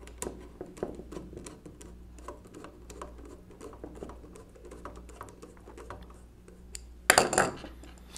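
A hand screwdriver turning a small steel screw into the metal frame of a 1920s Monroe K mechanical calculator: a run of small, irregular metallic clicks and ticks. A louder clatter comes about seven seconds in.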